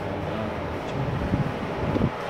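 Low rumbling noise on a handheld phone's microphone, with a few dull thumps in the second second, as the phone is carried and handled.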